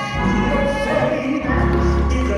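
Gospel choir singing in sustained notes with instrumental accompaniment; a deep bass note comes in about one and a half seconds in.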